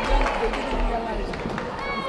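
People talking close by over the chatter of an arena crowd.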